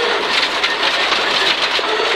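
Cabin sound of a Peugeot 306 rear-wheel-drive rally car driven hard on loose gravel: a dense, steady rattle and hiss of stones thrown against the underbody over the running engine.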